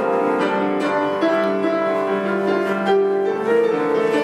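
Upright piano playing held chords, live.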